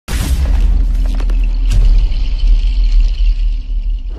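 A loud designed intro sound effect: a deep, sustained rumble that starts with a sudden boom, with a few sharp clicks and a high hiss over it.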